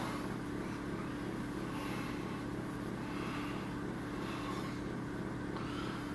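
Steady low hum with a few fixed low tones over a noise floor, unchanging throughout; room tone with no speech.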